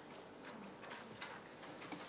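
A few faint clicks from a handheld presentation remote being pressed to advance the slide.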